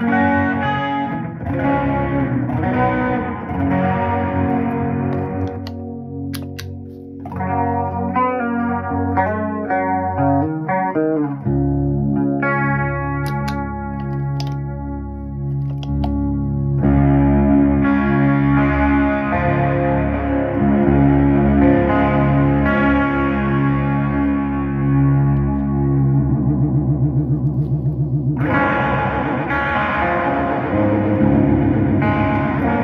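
Electric guitar chords and picked notes played through a parallel blend of clean signal and a chain of vibrato modulator, overdrive and short slapback delay, making a home-made chorus sound. The tone changes about 11 and 17 seconds in as effects are switched in and out, and near the end the sound pulses with a fast, even wobble.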